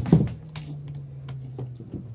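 Light clicks and taps of crimped wire connectors being handled, after a brief loud knock right at the start. Underneath runs the low steady drone of a passing motorcycle, its pitch sinking slightly as it moves off.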